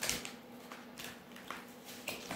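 Tarot deck handled in the hands before a card is drawn: a few faint clicks and rustles of the cards, the sharpest right at the start.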